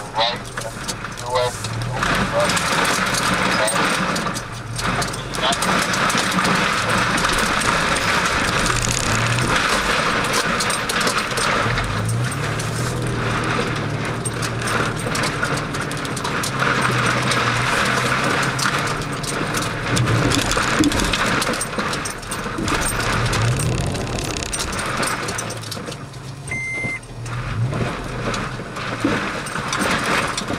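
Engine of an off-road vehicle running at low trail speed, heard from inside its cabin, its low drone rising and falling in pitch as the throttle changes over rough ground. Knocks and rattles from the bouncing cab run through it, and there is a short beep near the end.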